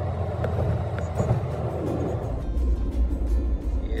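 Car cabin noise while driving: the steady low rumble of engine and tyres on the road, which grows deeper a little past halfway, with music playing along.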